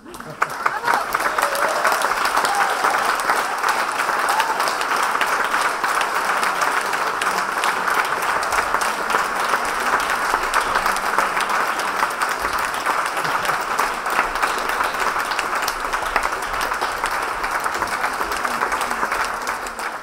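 Audience applauding, starting suddenly and continuing steadily.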